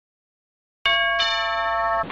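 Silence, then a bell-like electronic chime of several held tones starts about a second in, with more tones joining a moment later. The chord rings steadily and then breaks off suddenly.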